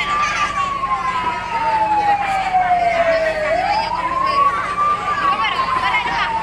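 A siren wailing in slow sweeps: a quick rise, then a long, slow fall, rising again about halfway through and falling once more.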